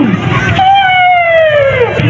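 One long, high-pitched wail that starts about half a second in and slides steadily down in pitch for about a second and a half, over crowd noise.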